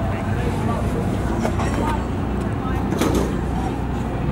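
Race car engine idling, low and steady, with voices chattering in the background.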